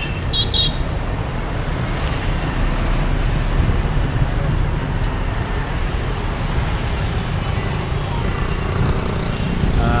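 Steady city road traffic, motorbikes and buses passing on the street, heard as a continuous low rumble.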